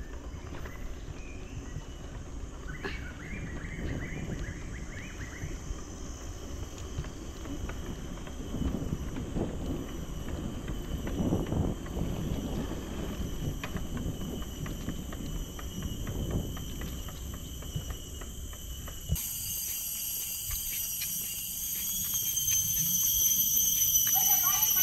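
Bicycle rolling on asphalt, with a low wind rumble on the microphone and scattered light clicks and rattles from the bike. About 19 seconds in, the rumble drops away and a steady high-pitched insect drone takes over.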